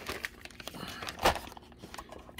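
Clear plastic bag crinkling as it is handled, with scattered small crackles and one sharp click about a second in.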